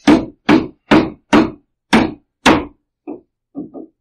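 Pounding on a wall: six heavy blows about half a second apart, each ringing briefly, like hammering during building work. Soft laughter comes near the end.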